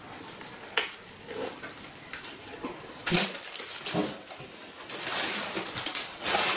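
Close-up eating sounds of two people biting and chewing burgers, with scattered small clicks and a sharper noise about three seconds in. Near the end, a rustle of paper burger wrappers.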